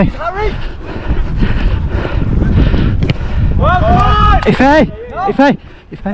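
Players shouting on the pitch, briefly just after the start and loudest from about three and a half to five and a half seconds in, over steady wind rumble on a body-worn action camera's microphone as the wearer runs.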